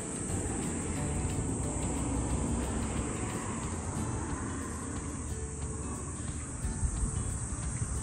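Steady, high-pitched drone of insects, with a low, uneven rumble of wind on the microphone underneath.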